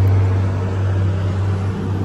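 Honda motorcycle engine idling steadily while the bike stands still.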